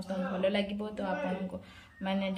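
A woman speaking, her voice trailing off near the end.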